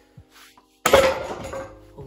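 A wooden branch dropped onto a concrete floor: one sudden loud clattering hit a little under a second in, ringing out over the next second.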